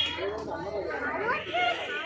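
Overlapping background chatter of several people talking at once, no words made out.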